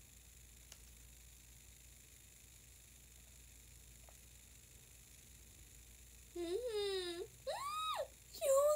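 Quiet room tone with a faint click, then about six seconds in a young woman makes two drawn-out closed-mouth "mmm" sounds, the second rising in pitch.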